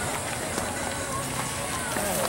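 Faint, indistinct voices of people on a walk, over a steady outdoor hiss.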